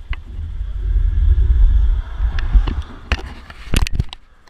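Wind buffeting an action-camera microphone on a fast downhill bicycle ride: a heavy, low rushing that is strongest in the first half and eases off. Two sharp knocks come near the end.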